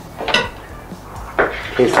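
A kitchen knife knocking twice against a wooden board as it cuts a slice from a rolled dough log and is laid down.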